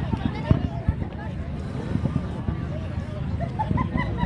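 Background chatter of several people talking at once, over a steady low rumble.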